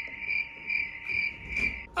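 Cricket chirping, a steady high trill pulsing about three times a second, which cuts off abruptly near the end: an edited-in 'crickets' sound effect marking an awkward silence.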